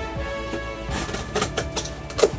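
Background music with steady tones, and from about a second in a quick run of sharp cardboard scrapes and tears as a box flap is pried up.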